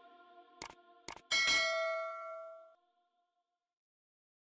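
Background music tails off, then two soft clicks. About a second in, a bright bell-like ding rings out and fades away over about a second and a half.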